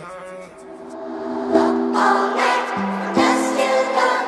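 Music from a hip-hop track with the drums and deep bass dropped out: sustained chords swell up from a quiet start and shift pitch a few times.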